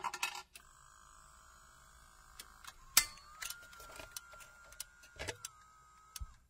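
Jukebox mechanism working: scattered quiet clicks and clunks, with a faint thin whine that starts about three seconds in and rises slightly in pitch.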